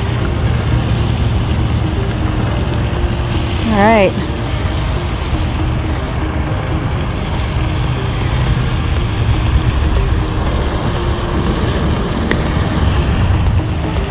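Steady loud rumbling noise, strongest in the low end, with a short vocal exclamation about four seconds in and a few faint clicks.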